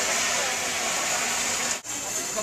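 A large pan of sauce cooking over a burner gives a steady hiss, with voices murmuring faintly behind it. It breaks off abruptly near the end.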